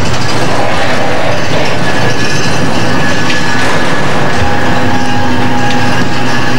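Loud continuous rumbling, clattering mechanical noise with steady high squealing tones held throughout.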